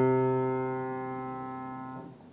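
Upright acoustic piano, the held final note of a piece ringing and fading steadily, then damped off at the very end as the key is released.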